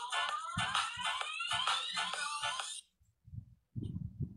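Electronic music with a steady beat and rising synth sweeps that climb in pitch for about three seconds, then cut off suddenly.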